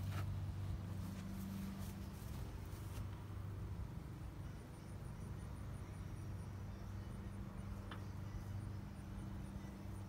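A steady low hum, with faint soft rubbing in the first few seconds as a paint roller loaded with stain is worked slowly up a wooden fence board.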